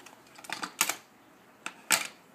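Plastic toy tools clattering against each other and an orange plastic toolbox as they are rummaged through: a quick run of clacks about half a second in, and one sharp clack near the end.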